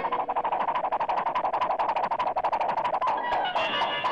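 Cartoon score music: a fast, even run of sharp percussive taps, about a dozen a second, over a held note. The taps stop about three seconds in.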